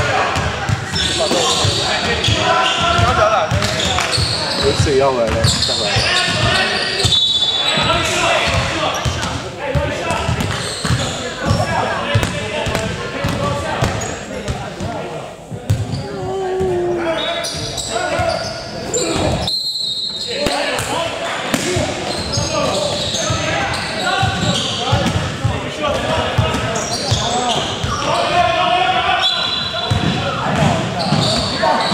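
A basketball bouncing on a hardwood gym floor amid players' voices and calls, echoing in a large hall. There are brief high-pitched tones about 7 and 20 seconds in.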